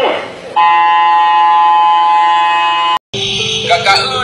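A loud, steady electronic buzzer tone, held for about two and a half seconds and then cut off abruptly. After a brief silence, music with singing begins.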